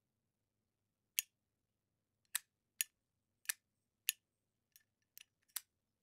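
A series of sharp, isolated clicks, about eight, irregularly spaced with dead silence between them, two of them close together near the end.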